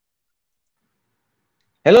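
Dead silence for nearly two seconds. Then, near the end, a man's voice cuts in abruptly to say "hello", with a sharp click as the sound comes back.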